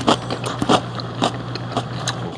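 Close-miked chewing of a man eating: wet mouth sounds with a few sharp clicks spread through the two seconds, over a steady low hum.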